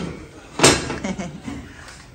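A single sharp clank about two-thirds of a second in as a flat metal griddle (comal) is set down onto a gas stove's grates.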